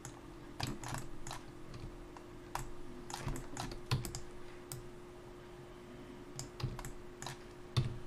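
Computer keyboard keys and mouse buttons clicking at an irregular pace, some in quick runs of two or three, over a faint steady hum.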